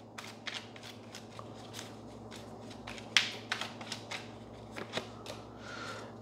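A tarot deck being shuffled by hand: an irregular run of soft card clicks and flutters, the strongest a little after three seconds in.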